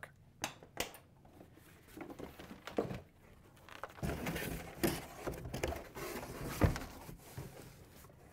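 Handling noise of a cardboard shipping carton: a few light taps and clicks, then from about halfway a stretch of cardboard rustling and scraping with a sharper knock near the end as a boxed item is lifted out and the carton is rummaged.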